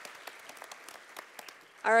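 Light audience applause: scattered hand claps that thin out toward the end, with speech resuming near the end.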